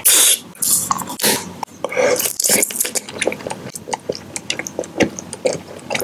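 Close-miked wet mouth sounds: a rapid, uneven run of lip smacks and tongue clicks, with a loud breathy rush right at the start.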